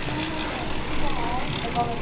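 Shop-floor ambience: faint voices in the background over a steady low hum.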